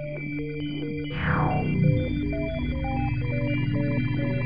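ZynAddSubFX software synthesizer playing back held notes: steady drone tones under a stream of short bleeps at jumping pitches, with a falling sweep about a second in.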